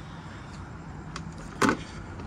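Steady low outdoor background noise, with a faint click about a second in and a louder short knock about one and a half seconds in.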